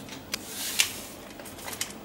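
A few short, light ticks and soft rustles as hands sprinkle and rub gelatin powder into a glass bowl of cold water.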